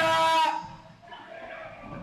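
A stadium PA announcer's voice holds out the last drawn-out syllable of a called player number, echoing. About half a second in it fades into a brief, much quieter lull.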